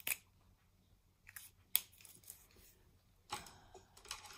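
Plastic caps of fine-line marker pens clicking as the pens are uncapped and swapped: a few sharp, separate clicks, the loudest just before the middle, with a short rustle of handling near the end.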